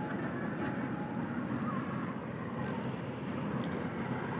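A steady low rumble of wind buffeting the microphone high in the palm crown, with a few faint clicks from the pot and rope being handled.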